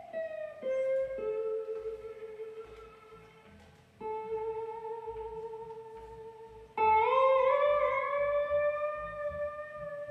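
Electric guitar playing a slow blues solo of long, sustained single notes. The first notes slide downward, and the loudest note comes in about seven seconds in and bends upward, over a soft upright bass line.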